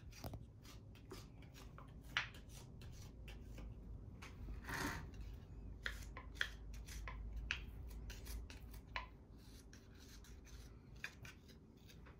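A hand scraping tool drawn up the outside wall of a soft clay cup, giving faint, irregular scraping strokes as it smooths the rough coil-built surface. One longer, louder stroke comes about halfway through.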